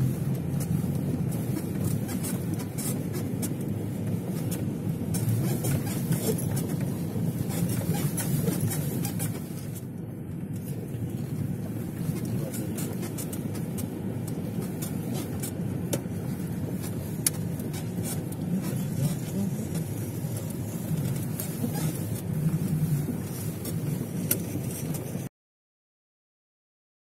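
Car driving along snow-packed streets, heard from inside the cabin: a steady low rumble of engine and tyres, with faint scattered crackles, that cuts off abruptly near the end.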